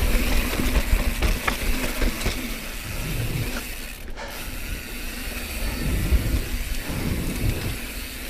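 Mountain bike rolling down a dirt singletrack: tyres on dirt and the bike rattling, with the rear freehub ticking as it coasts. Wind rumbles on the helmet-camera microphone.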